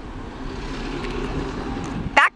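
Diesel locomotive engine running as the train moves past, a steady rumble with a faint low drone.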